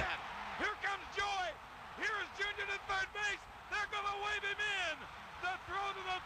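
Faint speech throughout: a television announcer's play-by-play commentary on the baseball broadcast, a man's voice calling the play.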